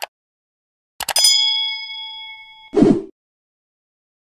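Subscribe-button animation sound effects: a mouse click, then a few more clicks about a second in followed by a notification-bell ding that rings and fades for about a second and a half. A brief low burst of noise cuts in near the end of the ding.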